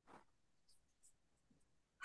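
Near silence, with one faint, brief sound at the very start.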